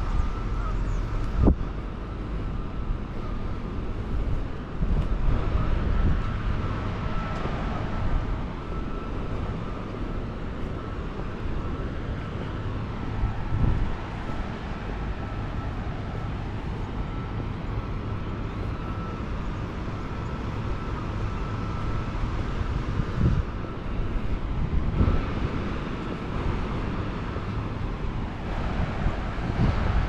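Steady low rumble of wind on the microphone, with a few soft bumps.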